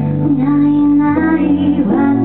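A woman singing long held notes to her own electric piano accompaniment, the chord and melody moving on about a second in.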